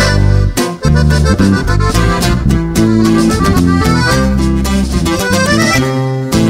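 Live norteño music: an instrumental passage with the accordion carrying the melody over guitar and a strong bass line. There is a brief break just under a second in.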